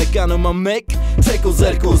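Armenian hip-hop track: rapped vocal over a beat with a steady deep bass. About half a second in, the beat and voice cut out for a moment, then come back.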